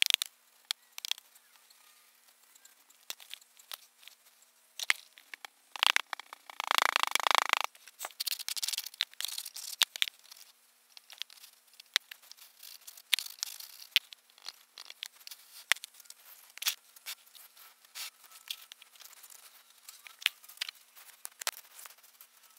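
Moulding sand being packed by hand into a wooden foundry flask and struck off flat, making scattered soft scrapes and rustles. A louder rush of sand comes about six seconds in and lasts about a second and a half.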